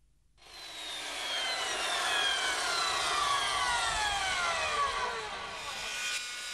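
Logo intro sound effect: a rushing whoosh that starts about half a second in, with several tones sliding steadily down in pitch over about five seconds, like a jet passing.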